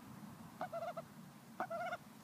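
A domestic duck giving two short, soft nasal calls about a second apart.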